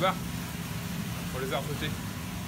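Steady low drone of a fishing boat's engine and machinery, heard from inside the vessel, with a short faint voice fragment about one and a half seconds in.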